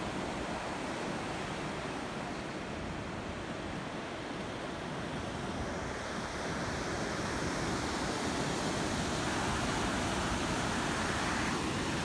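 Ocean surf breaking and washing up a sandy beach: a steady, even rush that grows a little louder in the second half.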